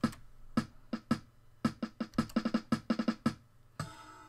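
Built-in drum-machine beat from a small electronic keyboard: a quick run of short electronic drum hits as the intro to a song, stopping shortly before the end.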